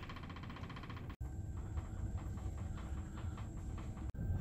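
Low, steady rumble of a cruise ship underway, its engines and hull vibration heard inside a cabin. The sound drops out for a moment about a second in.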